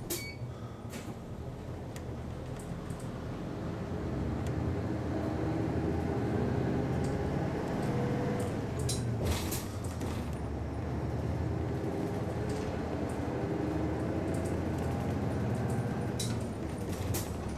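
City bus's diesel engine pulling away from a traffic light and accelerating, heard from inside the cabin, getting louder over the first several seconds and then running steadily. A few short clicks and knocks from the bus body come through, one near the start and a louder one about nine seconds in.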